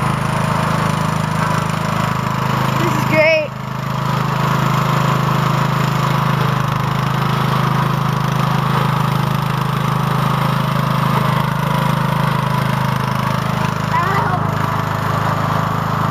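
Hydrostatic-drive lawn tractor engine running steadily under load as the tractor drives through snow. About three seconds in there is a brief louder burst, then a short dip.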